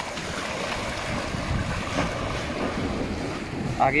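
Sea water washing and breaking against the rocks at the foot of a jetty, with wind buffeting the microphone.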